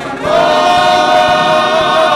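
Gospel choir singing together. After a brief break near the start, the choir comes in on a new note and holds it with vibrato.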